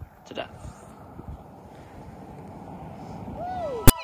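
Wind rushing on the microphone on an outdoor trail, slowly growing louder. Near the end it is followed by a short falling tone and a single sharp click.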